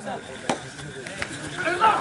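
Two sharp smacks, about half a second apart, during a kabaddi raid; men's shouting starts near the end as the defenders close in for the tackle.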